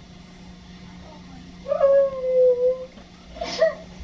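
A man whimpering in a crying fit: one drawn-out whine about halfway through, sinking slightly in pitch, followed by a short breathy sob near the end.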